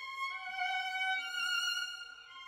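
Chamber music for bayan, violin and cello: sustained high notes, stepping to a new held pitch about a third of a second in and again a little past one second.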